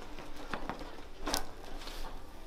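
Quiet rustling of hands shifting on a patient's shirt during a prone mid-back adjustment, with a single short click about a second in.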